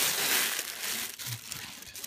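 Packing wrap rustling and crinkling as it is pulled off a model helicopter fuselage, loudest in the first second, then thinning to lighter crackles.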